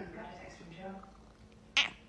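A domestic cat making a soft, short meow. A short sharp breathy noise comes near the end.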